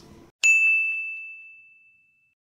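A single bright ding, a bell-like chime sound effect from the video edit, struck about half a second in and fading away over about a second and a half.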